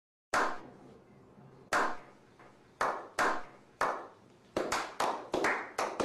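A slow clap by a small group of men: single hand claps with a short ringing tail, more than a second apart at first, quickening to several a second toward the end as more hands join in.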